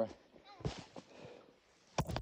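Faint rustling and a soft knock as a handheld camera is picked up and moved, ending in a sharp knock.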